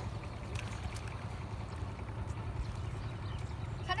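Steady low rumble of wind on the microphone by an open riverbank, with a few faint scattered clicks; a child's shout breaks in right at the end.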